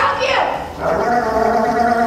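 A sea lion calling: a short call that falls in pitch, then a long, steady, held call from about a second in.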